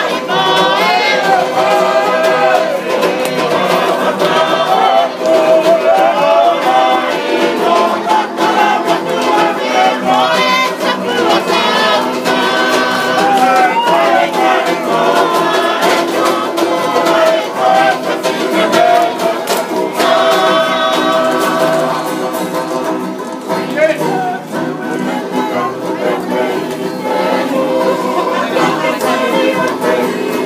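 A mixed group of men and women singing a Tongan tau'olunga dance song together, with strummed acoustic guitar and banjo accompaniment.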